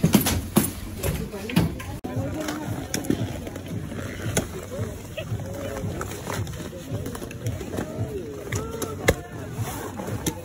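Scattered sharp clicks and knocks of ski boots and ski gear, over indistinct background voices.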